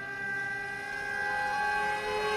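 Eerie horror-score drone: several high tones held steadily together like a sustained chord.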